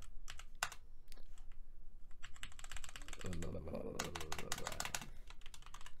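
Typing on a computer keyboard: a string of key clicks, faster in the middle, with a low voice murmuring under the keystrokes partway through.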